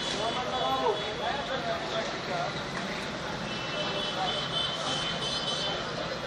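Asphalt paver's diesel engine running steadily, with workers' voices over it and a thin high whine that comes and goes.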